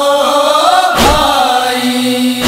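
A man chanting an Urdu noha lament in a slow, drawn-out melody. One deep thump comes about a second in, part of the slow matam (chest-beating) beat that paces the noha.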